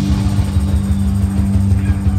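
Live rock band playing loud: one low note is held steadily over a rumbling bass, with no drum hits for these two seconds.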